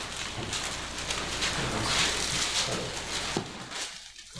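Thin Bible pages being leafed through and turned: a papery, crackly rustle with quick flicks, busiest about halfway through.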